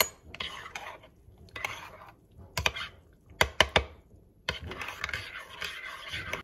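A spoon stirring hot chocolate in a mug, scraping around the inside in short swishes, with several sharp clinks of the spoon against the mug's rim near the middle.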